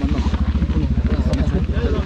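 Motorcycle engine idling, a steady fast even beat, with voices talking over it.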